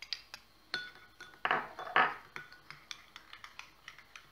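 Metal spoon stirring in a small glass bowl, clicking against the glass in quick irregular taps, with two louder, scraping strokes near the middle; it is mixing ammonium bicarbonate into milk.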